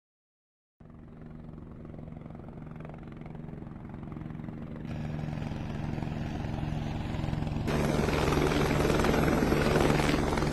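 Intro build-up of a music track: a low, fluttering drone fades in about a second in and grows steadily louder, turning brighter in two steps, around the middle and near the end.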